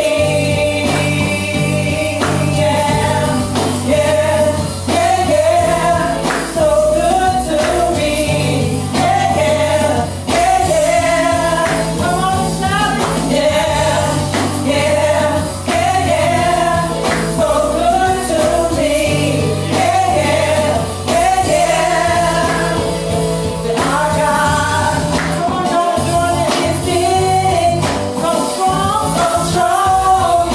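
A worship team of women singing gospel praise music live into microphones, over steady bass notes and percussion.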